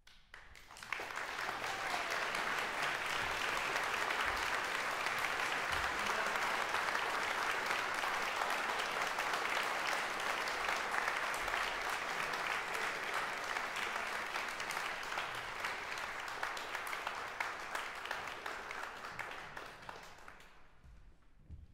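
Audience applauding. The clapping swells in about a second in, holds steady, and tapers off near the end.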